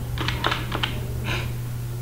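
Typing on a computer keyboard: a quick run of about half a dozen keystrokes in the first second, then a single keystroke shortly after, over a steady low hum.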